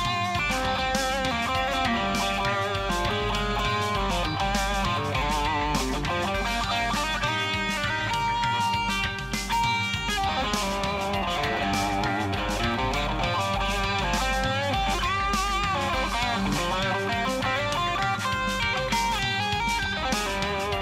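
Telecaster-style electric guitar playing a continuous single-note lead over a backing track with bass and drums, with vibrato on held notes. The lines are minor pentatonic licks with an added minor second and minor sixth, giving the Phrygian mode's sound.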